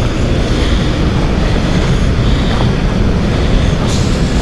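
A steady, loud rumbling noise without any tone, heaviest in the low end.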